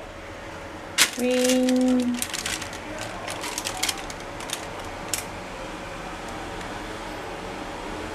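Carrot-cake batter being poured and scraped out of a bowl into a parchment-lined foil pan: scattered clicks and scrapes of utensil against bowl, with a steady hum lasting about a second shortly after the start.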